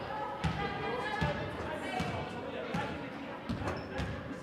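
Basketball being dribbled on a hardwood gym floor: a steady bounce about every three-quarters of a second, five in all, with voices calling out behind it.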